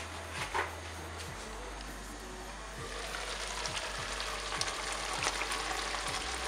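White chicken curry in a thick gravy simmering in a pan on a gas stove: a steady sizzle with small pops and crackles that grows a little louder about halfway through. Two light knocks come near the start.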